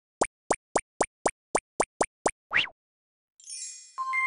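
Cartoon intro sound effects: a quick run of about ten short popping sounds, roughly four a second, each rising in pitch, then a longer rising swoop. After a short gap comes a sparkling shimmer that leads into a ringing chime near the end.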